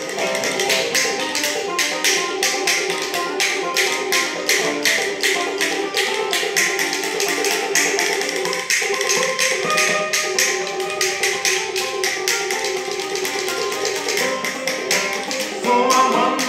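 Banjo playing an instrumental passage over a quick, even clicking rhythm of hand-played percussion.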